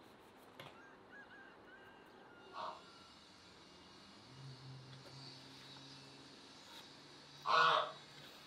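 A goose honking twice: a short call about two and a half seconds in, and a louder one near the end.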